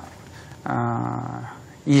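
A man's voice holding one flat, drawn-out hesitation sound for about a second, a filler while he searches for his next words.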